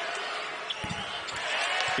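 A basketball bounces a few times on the hardwood court after dropping through the net on a made free throw, with a few short thumps about a second in. Arena crowd noise swells near the end.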